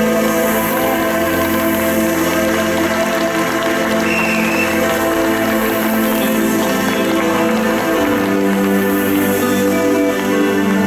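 Live progressive rock band playing a slow instrumental passage of held chords. The chord changes about three seconds in and again about eight seconds in.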